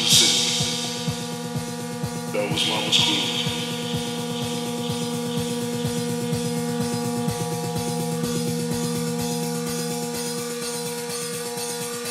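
Tech house/techno DJ mix playing: a held synth chord over a steady electronic beat, with a burst of hiss about two and a half seconds in.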